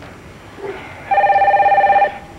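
A telephone ringing: a single trilling ring starts about a second in and runs for about a second, the loudest sound here.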